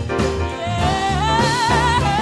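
Gospel-jazz recording: a woman's voice sings over a band, and from about a second in she holds a long note with wide vibrato over the steady bass.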